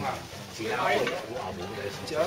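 Faint voices of people talking over a steady hiss of background noise.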